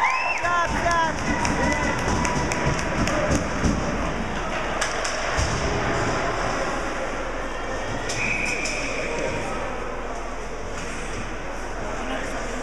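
Ice hockey game at a rink: spectators shouting in the first second, then many sharp clicks and clacks of sticks, puck and skates on the ice, and a short whistle blast about eight seconds in.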